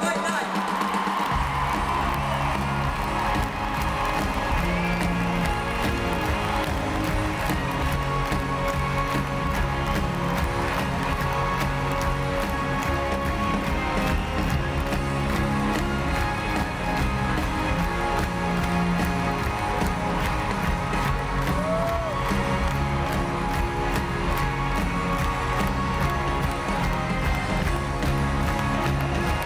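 A live big band with brass and saxophones plays an upbeat instrumental play-off with a steady beat, bass and drums coming in about a second in. A crowd cheers and claps over it, heard from among the audience.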